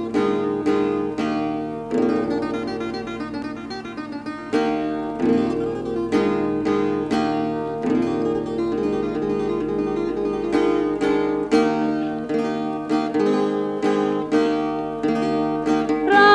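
Acoustic guitar playing an instrumental introduction of plucked chords and runs with regular strokes, in a 1961 field recording of a Sardinian cantu in re.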